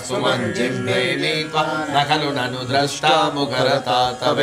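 A group of voices chanting a Hindu devotional text together in unison, in a steady, continuous recitation.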